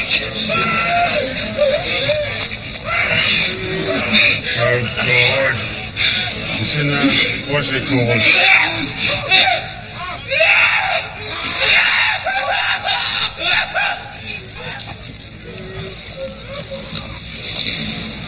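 Wounded soldiers crying out and screaming in pain, with agitated voices and a music score underneath.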